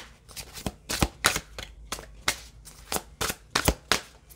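A deck of cards being shuffled by hand: an irregular string of sharp snaps and slaps as the cards strike each other, with a couple of heavier ones about a second in and near the end.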